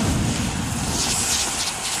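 A loud, steady rushing noise with a deep rumble underneath that thins out in the second half.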